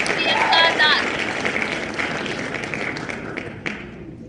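Recorded crowd applause with a few cheering voices, the celebration sound an online name-picker wheel plays when it lands on a name, fading out over the few seconds. Two faint clicks near the end.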